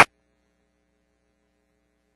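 A laugh cut off abruptly at the very start, then near silence with only a faint steady electrical hum.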